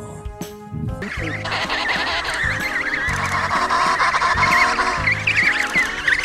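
A colony of emperor penguins calling, many wavering high-pitched calls overlapping, starting about a second in, over background music.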